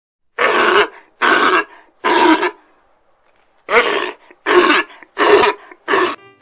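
A harsh, rasping voice-like cry repeated seven times, each about half a second long: three in a row, a pause, then four more.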